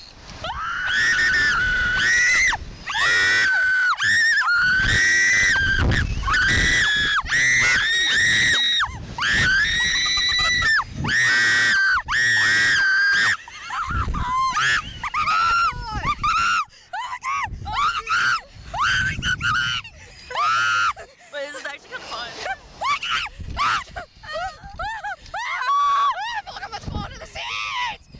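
Two children screaming on a Slingshot reverse-bungee ride as it launches them upward. Long, high-pitched screams one after another for about the first half, then shorter cries and laughing screams.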